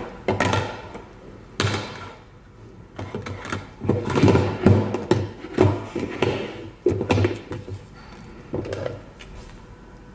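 Clear plastic food storage containers and lids being handled on a wooden table: a run of irregular knocks and clatters, busiest about halfway through.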